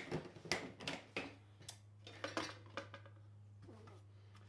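Plastic storage tub being opened and rummaged: several sharp clicks and knocks of its snap latches, lid and contents in the first two and a half seconds, then quieter handling, over a steady low hum.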